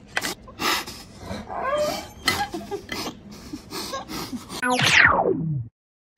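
Crunchy bites into a pickle mixed with wordless excited vocal noises. About four and a half seconds in, a loud electronic sting sweeps steeply down in pitch and cuts off suddenly.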